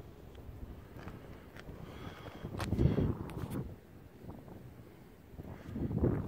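Wind buffeting the microphone outdoors: an uneven low rumble, with a louder gust and a few sharp clicks about three seconds in.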